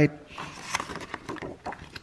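A paper quick-start guide sliding and rustling against a cardboard box as it is lifted out, a soft papery scraping that fades out near the end.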